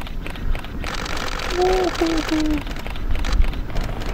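A constant low rumble with wind noise, a hiss swelling through the first half, and three short shouts from a person in quick succession around the middle.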